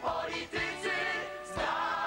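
Music: a chorus of voices singing a lively song together over band accompaniment, with a low beat thudding about once a second.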